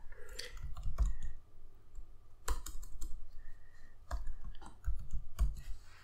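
Typing on a computer keyboard: irregular keystroke clicks, some with a dull low thud, and a short pause partway through.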